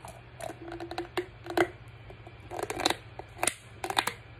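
A pickle being chewed close to the microphone: a series of short, crisp crunches.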